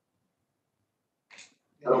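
Near silence, then a short hiss about a second and a half in, and a voice starting to speak near the end.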